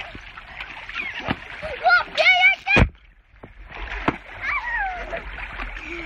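Water splashing and sloshing in an inflatable pool as children play, with a few sharp slaps of water. A child's loud high-pitched squeal comes a little over two seconds in, and there are further brief shouts.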